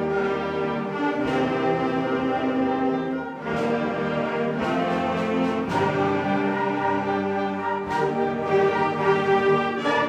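Middle school concert band playing, with trumpets, French horns and flute: sustained chords that move several times, with a few sharp accented attacks along the way.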